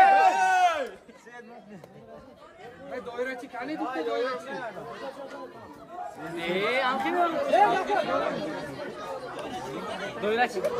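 Chatter of a crowd of men talking at once, many voices overlapping, with one louder voice in the first second.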